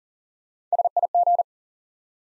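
Morse code sent as a single steady beep tone at 40 words per minute, spelling SIG (dit-dit-dit, dit-dit, dah-dah-dit), the abbreviation for 'signal'. It starts a little past half a second in and lasts under a second.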